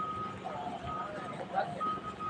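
A repeating electronic beep: one steady high tone sounding in short pulses roughly once a second, with faint voices behind it.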